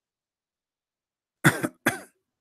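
Silence, then a man coughs twice in quick succession near the end.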